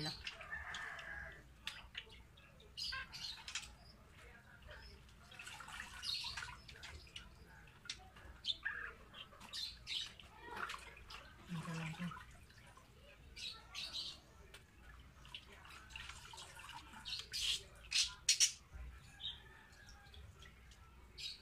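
Water splashing in a plastic bucket in short, irregular bursts as a pigeon is dipped and held in a malathion wash.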